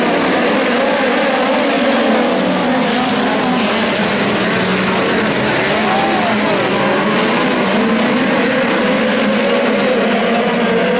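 A pack of midget race cars racing on a dirt oval, several engines running at once and rising and falling in pitch as they go through the corners.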